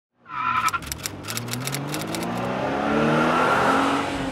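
Logo-intro sound effects: a brief high squeal-like tone, then a quick run of sharp clicks, then a swelling sound that rises in pitch and builds in loudness toward the end, like an engine revving up.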